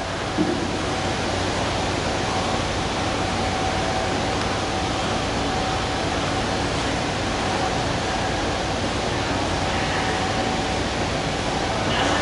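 Steady, even rushing noise of an indoor swimming pool, water movement mixed with air handling, with a faint steady hum in it.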